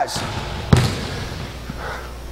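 A basketball bouncing once on a hardwood gym floor, a single sharp bounce a little under a second in.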